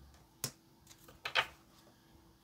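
A tarot card being set down and tapped on a wooden tabletop: one sharp tap about half a second in, then a louder double tap a little after a second in, with a few faint clicks between.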